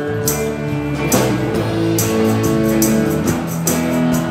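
Live rock band playing: electric guitars, bass, keyboard and drums, with cymbal and drum hits over held chords. The recording levels were set too hot.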